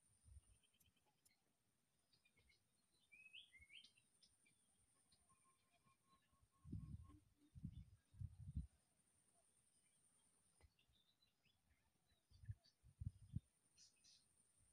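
Quiet outdoor ambience with a few faint bird chirps and a steady thin high-pitched tone. Low dull thumps stand out: a cluster of three around the middle and another three near the end.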